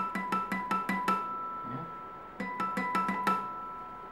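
Fender CD60E acoustic guitar playing crisp natural harmonics at the 5th fret. Two quick runs of picked notes are heard, the second starting a little past halfway, and the high chiming notes ring on between them.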